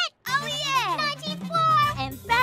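Excited cartoon children's voices exclaiming without clear words, their pitch sweeping up and down, over background music with a steady low bass note that starts a moment in.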